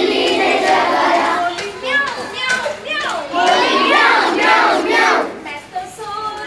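A group of young children singing and calling out together, led by a woman's voice, with some hand claps.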